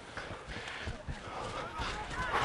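Field-level sound of a rugby league match in play: steady crowd noise with faint players' shouts growing in the second half.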